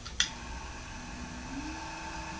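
A click, then the small 12-volt DC motor of a motorized turntable running slowly on a speed controller turned down to the bottom of its range. It makes a faint steady hum whose pitch steps up slightly about one and a half seconds in.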